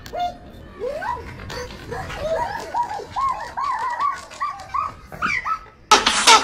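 A dog yelping and whimpering in a quick run of short cries, each rising and falling in pitch, about three a second, over a low steady background rumble.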